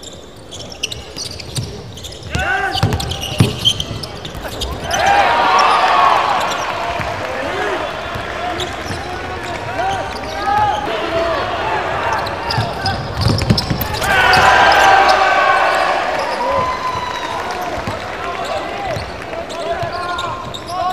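Basketball game sound in an arena: the ball bouncing on the hardwood court, sneakers squeaking, and crowd noise that swells about five seconds in and again about fourteen seconds in.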